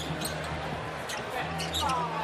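Basketball being dribbled on a hardwood court: a few short, sharp bounces over the steady low din of an arena.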